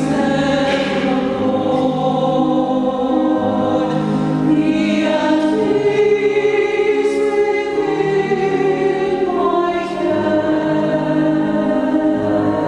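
Small mixed choir singing in harmony, holding long notes.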